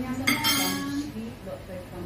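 Cutlery and dishes clinking as food is served at a dinner table, with one bright ringing clink about a third of a second in that fades within a second.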